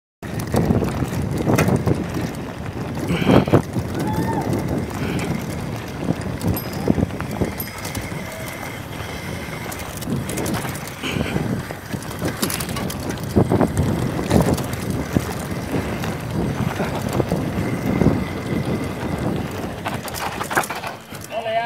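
Mountain bike rattling and clattering down a rough dirt trail, its tyres rolling over dirt, roots and loose stones, with wind buffeting the camera microphone.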